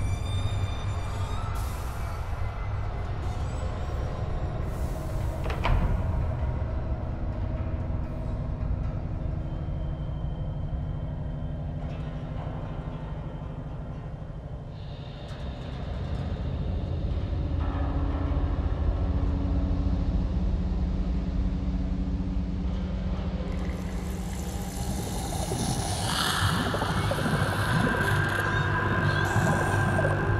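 Dark, droning horror film score over a low rumble, with long held tones. There is a sharp hit about six seconds in, and the music swells near the end.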